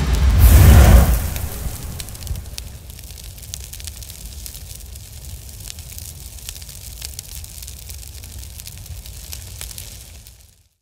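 Intro sound effect: a loud whooshing hit in the first second that dies away into a steady crackle of fire with a low rumble underneath.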